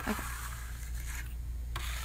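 Metal trowel scraping wet Venetian plaster across a surface in one steady stroke that stops shortly before the end.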